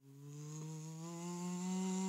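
A long, buzzy cartoon snore: one drawn-out pitched rumble that starts abruptly and swells louder as it goes on.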